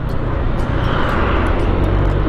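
Steady rush of wind and road noise over a scooter's helmet-camera microphone while riding in traffic, with the scooter's engine running underneath; the noise swells about a second in.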